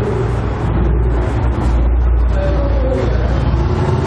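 A loud, steady low rumble with an even hiss above it, continuous background noise that holds level throughout.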